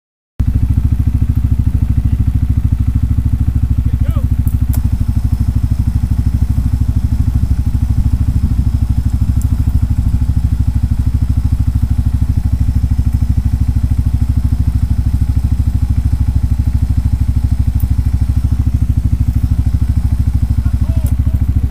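ATV engine idling close by, a steady low, rapid pulsing, with a few sharp clicks about four to five seconds in.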